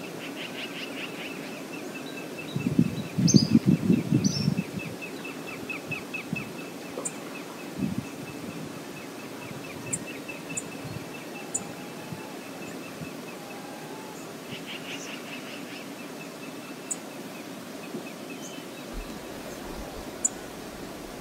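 Steady rush of a flowing river, with a bird's rapid run of high chirps repeating over the first several seconds and again briefly past the middle. About three seconds in, a loud low rumbling burst lasts a couple of seconds.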